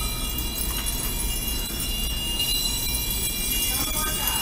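Steady machine hum with a low rumble and several faint, high, steady whining tones, typical of the refrigeration in the self-serve frozen yogurt dispensing machines.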